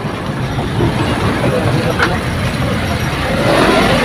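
Steady motor-vehicle rumble, rising a little in loudness near the end.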